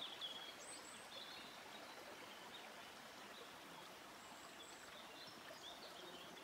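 Faint outdoor ambience: a steady, soft murmur of running stream water, with a few brief, high bird chirps scattered through it.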